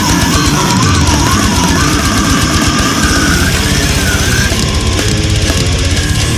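Brutal death metal recording: heavily distorted guitars with wavering lead lines over fast, dense drumming.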